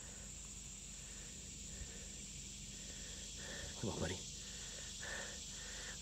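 Steady, high-pitched trilling of an insect chorus, with a few short faint tones in between.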